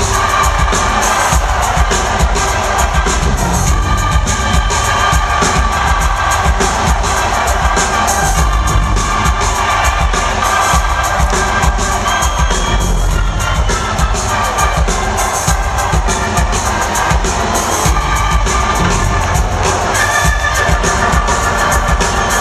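A four-piece jam band plays live on electric guitar, bass, drums and keyboards in an arena, heard from within the crowd. The band is steady and loud with a heavy low end, and the audience cheers over it.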